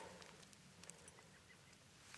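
Near silence, with a few faint ticks and scrapes of loose soil and small rock fragments being handled by bare hands.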